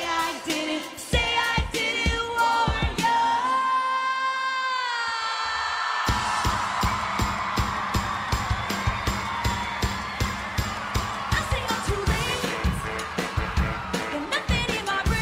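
Live pop music with a woman singing: a long held note slides down, then about six seconds in a steady, fast drum beat kicks in under the band.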